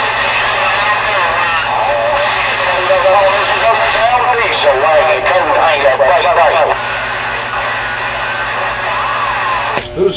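CB radio receiving distant skip stations: faint, unintelligible voices come and go over a steady band of static and hum, strongest between about two and seven seconds in. Just before the end a sharp click as a strong station keys up.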